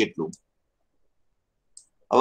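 The last syllable of a man's speech, then dead silence broken only by one faint, short click just before the talking resumes.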